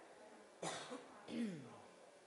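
A person coughing twice, about two-thirds of a second apart; the second cough trails off with a falling voiced sound.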